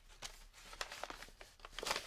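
Paper rustling and crinkling as old photographs and a paper bag are handled, in short scattered rustles that grow busier toward the end.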